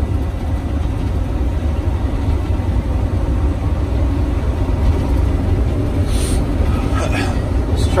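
Steady low drone of the Volvo D13 diesel engine and road noise inside the cab of a 2013 Volvo VNL day cab truck driving on the road.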